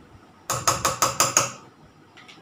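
A metal spoon tapped quickly against the rim of a metal cooking pot, about six taps in a second, knocking yogurt off the spoon.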